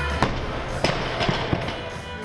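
A 170 kg barbell loaded with Eleiko rubber bumper plates is dropped from overhead onto wooden lifting blocks. A loud bang about a quarter second in and another near the middle are followed by a couple of smaller knocks as the bar settles. Background music plays throughout.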